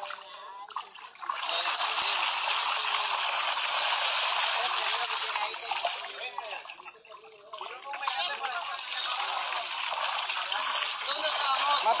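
Piranhas thrashing at the surface as they tear at a bull's head held in river water: a loud, sustained churning splash that starts about a second in, stops for about a second near the middle, when the head is lifted out of the water, then starts again.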